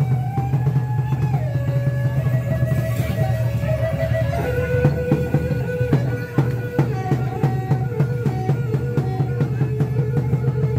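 Music with a fast, dense drum beat under a held melody line that slides from note to note.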